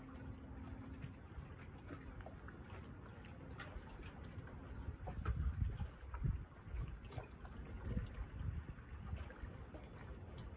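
Wind buffeting the microphone in gusts, strongest in the middle, over faint lapping water with small scattered ticks. A short rising chirp sounds near the end.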